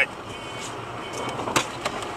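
Steady road and engine noise inside a moving car, with a few short clicks scattered through it.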